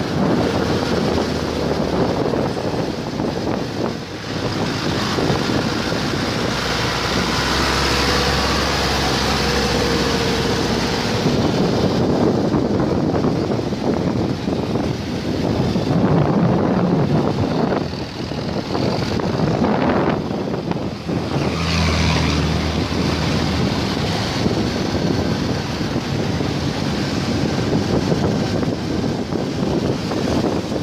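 Steady road noise from a vehicle driving through city traffic, with wind rushing over the microphone. The engine sounds of passing traffic swell and fade now and then.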